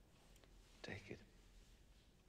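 Near silence, with a brief faint whispered sound about a second in.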